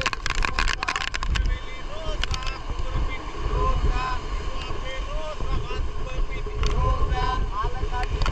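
Wind rumbling on the microphone, with short calls from the men hauling a beach-seine net rope along the sand.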